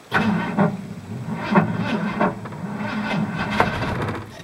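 1985 Ford F-150's 300 cubic-inch inline-six being cranked over by its starter on a cold start, turning over sluggishly with an uneven pulsing and not catching: the battery is weak.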